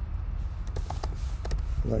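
Computer keyboard keys clicking as code is typed: a handful of separate, quick keystrokes over a low steady hum.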